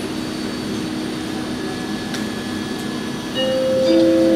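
An ICE 3 high-speed train standing at the platform with a steady electrical hum from its onboard equipment. About three seconds in, a two-note announcement chime begins, higher note first and then lower, ahead of a spoken announcement.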